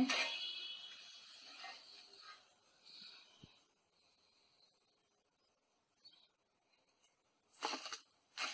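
Faint sizzle of potato slices deep-frying in hot oil, fading away over the first couple of seconds, then near silence.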